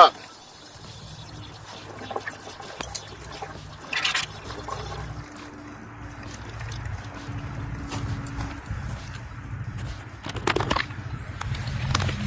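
Flush water running out of a hose submerged in a partly filled bucket, a steady low liquid rush from backflushing a clogged heater core. Two brief louder noises break in, about a third of the way in and near the end.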